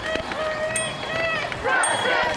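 Voices of a marching protest crowd: several people calling out at once, some in drawn-out shouts, over the steady noise of the crowd on the street.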